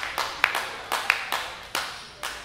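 A small audience clapping at the end of a song: a few people's handclaps, about four claps a second, thinning out and fading.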